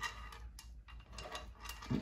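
Small, irregular clicks and taps from raw bacon strips being pulled apart and laid into a metal roasting pan by hand.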